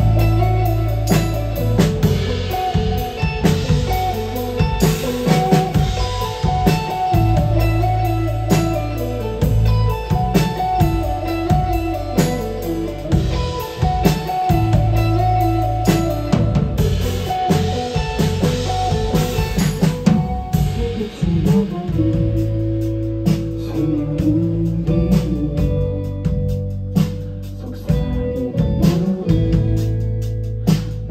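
A live band playing a song, with a drum kit and guitar over a heavy low end.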